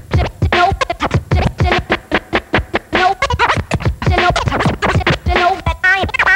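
Vinyl record scratching on a DJ turntable and mixer: rapid back-and-forth scratch strokes, several a second, each sweeping up or down in pitch, cut in rhythm.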